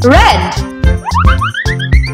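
Upbeat children's background music with a steady beat, overlaid with cartoon sound effects: a springy boing that rises and falls near the start, then a quick run of rising whistle-like glides in the second half.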